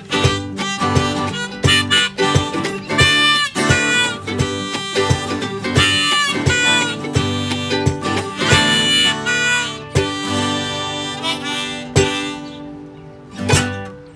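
Harmonica played on a neck rack over strummed ukulele and acoustic guitar: an instrumental break in a folk children's song. The playing dies away near the end, with one last strummed chord.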